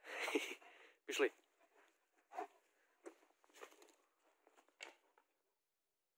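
A person's voice in two short bursts, followed by a few scattered, soft footsteps as they walk off.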